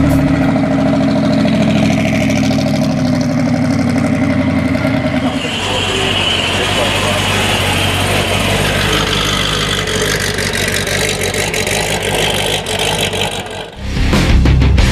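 Car engine running with a low, steady note, turning into a louder, rougher sound from about five seconds in.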